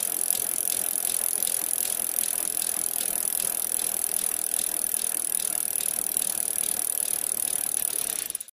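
A bicycle wheel spinning with a steady ticking, several clicks a second, over a hiss.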